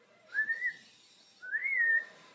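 African grey parrot whistling two short notes about a second apart, each sliding upward in pitch, the second rising to a peak and then easing down.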